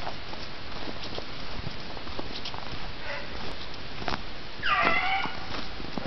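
A hunting hound baying on a hare's trail: a faint call about three seconds in and a louder, higher one near five seconds, over a steady rustling hiss.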